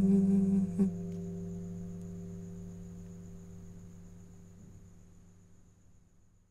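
The end of a song: a held hummed note from a male singer stops with a soft click about a second in. The final acoustic guitar chord is left ringing and slowly fading away.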